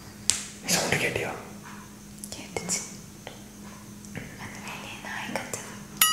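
Hushed whispering between two people, in short breathy bursts, with a few soft clicks and a steady low hum underneath.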